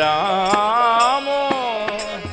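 Devotional kirtan: a male voice sings a long, wavering melodic line of the chant over a sustained harmonium, with light percussion strikes about every half second.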